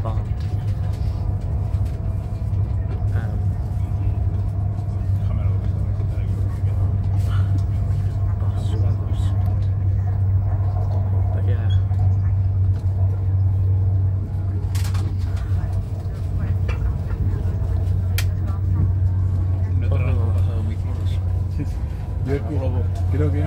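Steady low rumble of a moving passenger vehicle heard from inside the cabin, with faint voices and a couple of sharp clicks about two-thirds of the way through.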